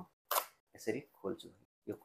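One short, crisp rip as the paper pull-tab seal on a cardboard Apple MagSafe charger box is torn open, about a third of a second in, with brief low speech after it.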